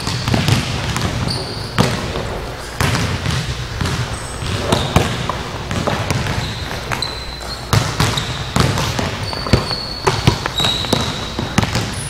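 Basketballs bouncing on a hardwood gym floor, irregular thumps as several players dribble and drive to the basket, with short high sneaker squeaks now and then in the second half.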